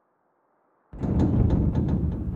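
Near silence, then about a second in a heavy wooden door opening: a low rumble with a run of clicks and knocks.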